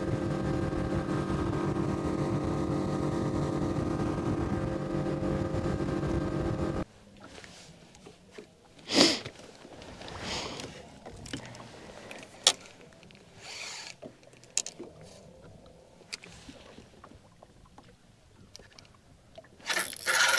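Outboard motor running steadily at speed, the boat planing; the sound cuts off abruptly about seven seconds in. Afterwards only faint scattered clicks and knocks, with one brief louder rustle about nine seconds in.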